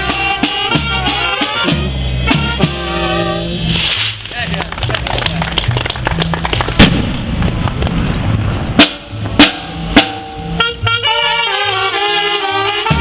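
Village brass band, saxophones and trumpets over snare and bass drum, playing a festive tune. About four seconds in the horns drop out for a drum passage with several loud bass-drum and cymbal strokes, and the horns come back in near the end.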